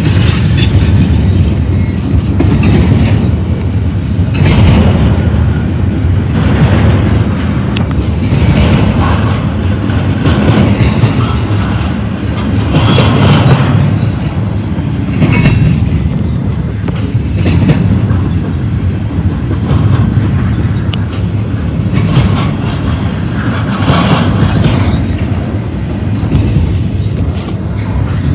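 Double-stack intermodal container train rolling past at speed close by: a steady rumble of steel wheels on rail, with a clatter as the wheel sets go by, roughly every two seconds.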